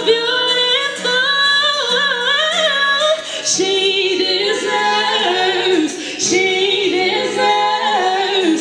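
Live song: a woman singing lead over a strummed acoustic guitar, with two women singing harmony behind her.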